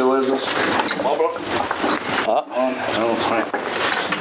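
Men's voices talking, with a spell of rustling, scraping handling noise in the middle.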